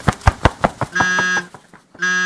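Rapid, even ticking, about six ticks a second, with a short electronic buzzer tone about a second in lasting under half a second.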